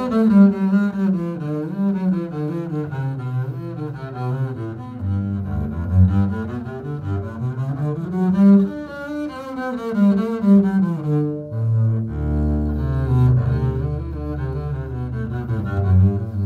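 Solo double bass played with a bow: a slow melodic line with vibrato. About twelve seconds in it moves down to lower, longer-held notes.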